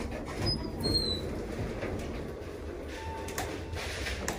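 Wheelchair rolling out of an elevator and across the lobby floor, a steady low rumble from its wheels, with a few short high squeaks about a second in.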